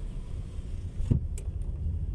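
Car moving slowly, heard from inside the cabin: a steady low rumble of engine and tyres, with one short thump about a second in.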